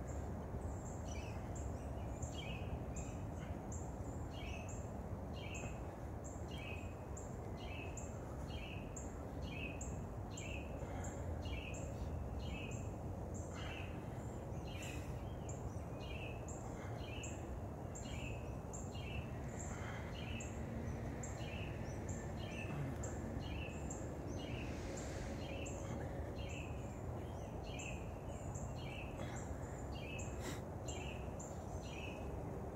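A small bird repeats the same short, high chirp at an even pace, about one and a half times a second, over a steady low rumble of outdoor background noise.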